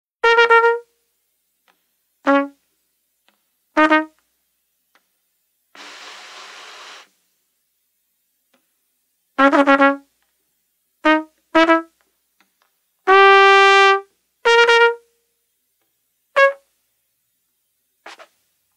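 Solo trumpet playing short, separated notes with silences between them, with an unpitched breathy rush of air through the horn about six seconds in and one longer held note about thirteen seconds in.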